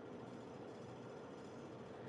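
Quiet room tone: a faint, steady hiss with a thin steady hum running under it.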